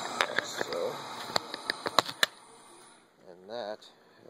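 A quick series of sharp clicks and knocks from small metal hub parts being handled, about seven in the first two seconds, over a steady background hiss.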